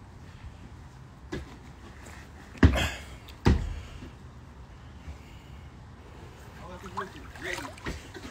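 Two sharp thumps about a second apart from a football being kicked, with faint distant voices near the end.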